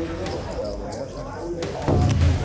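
Card-room ambience: a murmur of voices around the table, with sharp clicks of poker chips being handled and bet, several close together near the end.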